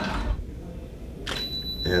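A photo flash firing with a sharp click, then a steady high-pitched whine as the speedlite recharges, over low room hum.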